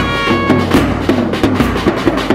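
Brass band (band baja) playing: a held trumpet note fades out about half a second in, then drums keep a steady beat under a lower brass melody.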